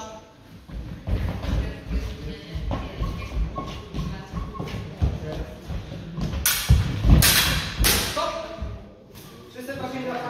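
Fencers' feet thudding repeatedly on a wooden floor as they advance. About six and a half seconds in comes a quick run of loud, sharp clashes as they close into an exchange of sabre blows.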